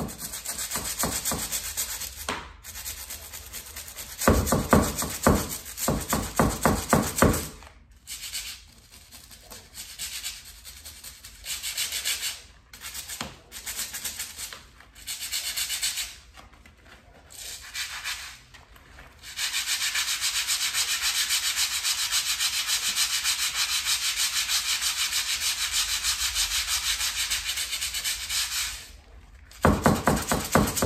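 Stiff-bristled hand scrub brush scrubbing along a baseboard at the edge of a tile floor, in fast back-and-forth strokes. It comes in several short bursts with pauses, then one long unbroken spell of scrubbing through the second half.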